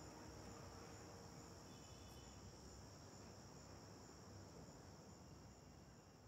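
Near silence between songs: faint hiss with a thin, steady high-pitched whine, slowly growing quieter.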